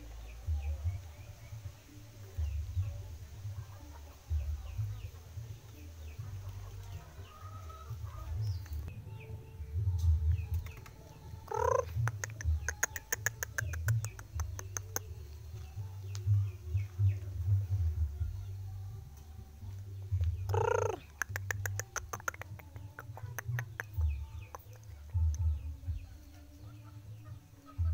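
A rooster crowing twice, about nine seconds apart; each crow opens with a short rising note and lasts about three seconds. A constant low rumble on the microphone runs underneath.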